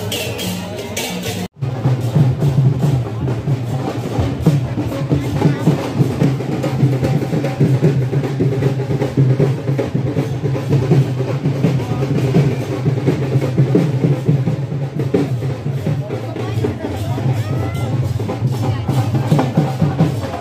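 Drum-heavy music with a steady beat, over crowd voices; the sound drops out completely for a moment about one and a half seconds in.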